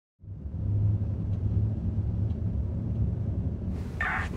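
Low, steady rumble of a car's interior ambience, fading in quickly at the start.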